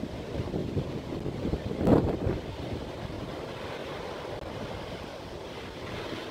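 Surf breaking on a rocky beach, with wind buffeting the microphone; a louder surge about two seconds in.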